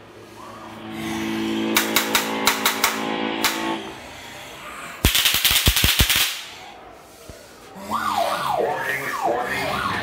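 Haunted-house scare noises: a low droning hum with a run of sharp clicks, then a sudden loud rattling burst lasting about a second, then a series of falling wails or shrieks near the end.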